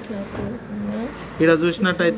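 A person's voice, quiet at first, then louder with long held notes from about one and a half seconds in.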